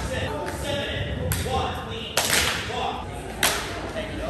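Cheerleaders' hits on the sprung practice floor and hands as they run a dance routine: four or five sharp thuds and slaps about a second apart, with voices talking in the hall.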